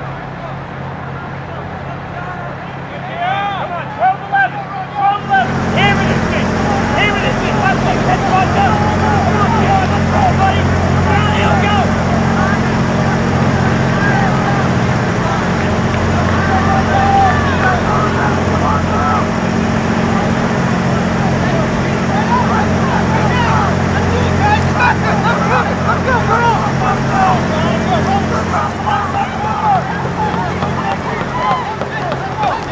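Spectators shouting and cheering on passing cross-country runners, many voices overlapping, louder from about five seconds in. A steady low hum runs beneath the voices from about the same point.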